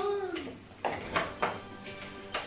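Red Christmas baubles knocking: three light taps about a second in, each closer to the last, like a dropped bauble bouncing. Soft background music runs underneath, and a voice trails off at the start.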